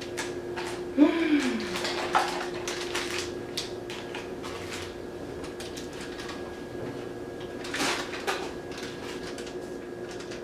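Hands handling a paper packet and small kitchen items: rustling with light clicks and knocks, and a louder rustle near the end. A short sound falls in pitch about a second in, and a steady low hum runs underneath.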